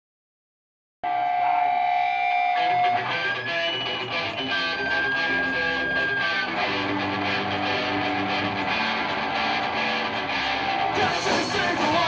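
Punk-rock band playing live: after a second of silence, electric guitars come in with held, ringing notes, then drums join with a steady cymbal beat about four seconds in, and the full band gets louder and brighter near the end.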